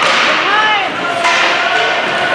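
Ice hockey game in an echoing rink: sharp cracks of stick and puck, one at the start and one a little past a second in, over steady crowd noise. About half a second in, a spectator gives a shout that rises and falls in pitch.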